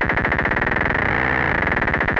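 MFOS Noise Toaster DIY analog synthesizer sounding a rapid train of short falling-pitch blips over a steady high tone. As a knob is turned, the repeats speed up into a blurred buzz about halfway through, then separate into distinct blips again near the end.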